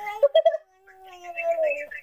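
A baby babbling into a phone: a few short syllables, then one long drawn-out sound that slowly falls in pitch.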